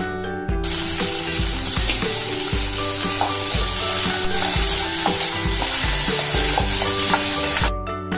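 Food frying in hot oil, a dense steady sizzle that starts about half a second in and cuts off abruptly near the end. Background music with a regular beat plays under it.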